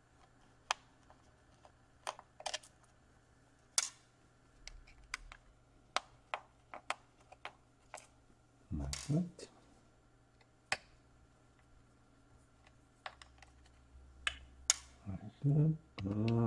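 Irregular small, sharp clicks and ticks of a Torx screwdriver and tiny screws being worked out of a laptop's bottom panel. A short murmur from a person comes about nine seconds in and again near the end.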